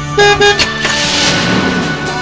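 Two quick car-horn beeps as an added sound effect, followed by a swishing whoosh, over background music.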